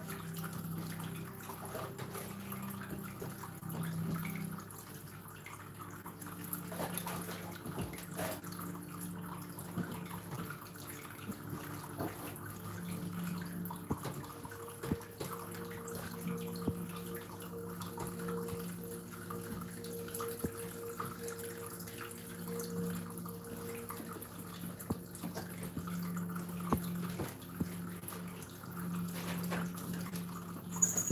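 Cloth sheets being gathered and handled on the floor, rustling, with scattered small knocks, over a steady low electrical hum.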